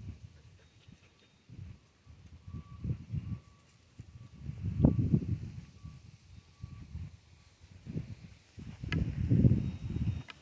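Wind buffeting the phone's microphone in uneven low rumbling gusts, strongest about halfway through and again near the end. Behind it a faint high beep repeats steadily.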